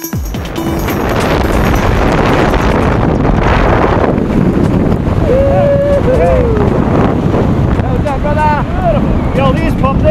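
Loud, steady wind rushing over the camera microphone during a tandem skydive. A man's voice calls out over it twice, its pitch rising and falling, about halfway through and again near the end.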